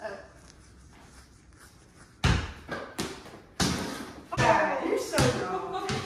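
A small basketball bouncing on the floor, about five bounces starting about two seconds in, with voices among the later bounces.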